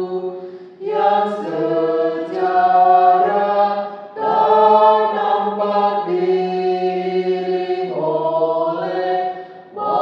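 A choir chanting a slow melody over a steady low held drone, in long sung phrases with short breaks about a second in, around four seconds in and just before the end.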